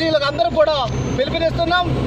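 A man speaking in Telugu over a steady low rumble.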